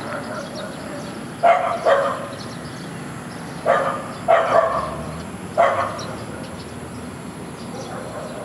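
A dog barking, about six short barks, some in quick pairs, over roughly four seconds, above a steady background hum.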